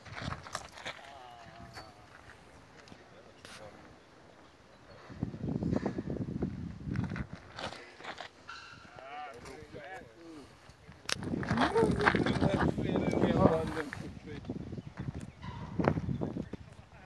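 Indistinct voices of people talking, loudest in a stretch a few seconds before the end, with scattered short sharp clicks.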